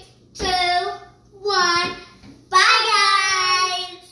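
Children singing in high voices: two short notes, then one long held note of about a second and a half.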